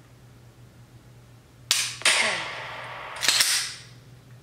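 Simulated gunshot sound effect for a laser dry-fire shot at a pistol target. A sharp bang with a long hissing tail and falling tones comes a little under two seconds in, and a second bang about a second and a half later. It is far louder and longer than the click of a dry-fired pistol.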